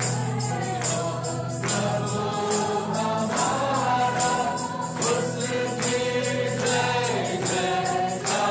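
Music: a choir singing a gospel-style song over a sustained bass, with a steady high percussion beat.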